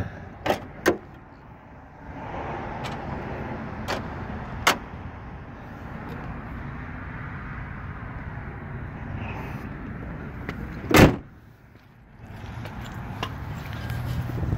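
Steel hood of a 1992 Ford Mustang GT being slammed shut: one loud bang about eleven seconds in. A few lighter knocks come in the first five seconds as the hood is handled.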